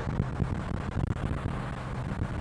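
Inside the cabin of a 1959 Ford Thunderbird cruising on the road: the 352 V8 runs steadily under an even hum of road and wind noise.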